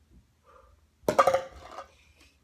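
A faint tap of a plastic toy putter on a plastic ball, then about a second later a louder clatter lasting under a second as the ball knocks into a red plastic cup and rattles back out instead of staying in.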